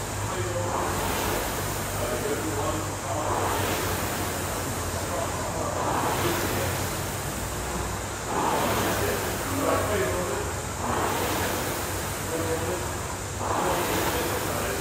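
Air-resistance rowing machine flywheel whooshing with each drive stroke at a steady pace, a surge of fan noise about every two and a half seconds.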